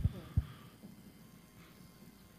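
Two or three soft low thumps in the first half second, typical of a handheld microphone being handled, then faint room tone of a hall.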